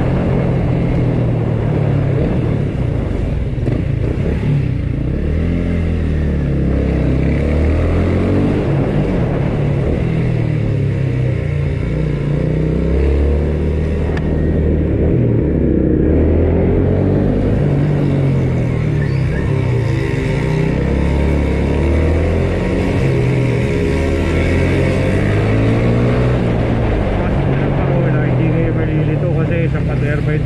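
Motor scooter engine running at low road speed, its pitch rising and falling over and over as the throttle is opened and eased.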